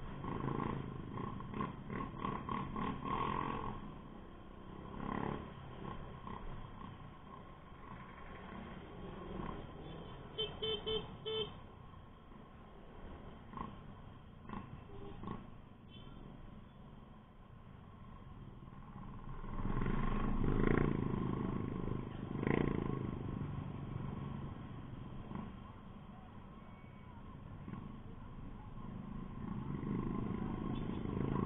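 Small Honda motor scooter engine running at low road speed, heard from the rider's seat as a steady low rumble mixed with road and wind noise. About ten seconds in there is a quick series of four short beeps, and the rumble swells louder a little past the twenty-second mark.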